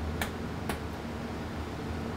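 Furnace blower motor running against high static pressure from a simulated clogged filter, starting to ramp down as the restriction is cleared. Two sharp switch clicks from the control panel come in the first second.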